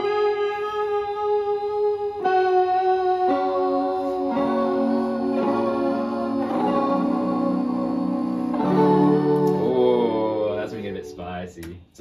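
Playback of a layered, effects-processed guitar part through studio monitors: sustained chords that shift every second or two, growing fuller and louder toward the middle and thinning out near the end.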